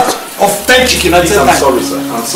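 A person's voice with pitch gliding and breaking throughout, over a steady low hum that comes in about half a second in and fades near the end.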